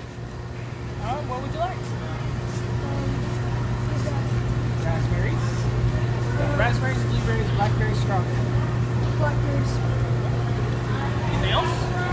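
Busy store ambience picked up by a phone: a steady low hum with scattered, indistinct voices of nearby shoppers and the sample-station worker.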